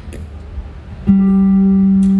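Acoustic guitar sounded through the stage PA: a note is plucked about a second in and left ringing, held steady.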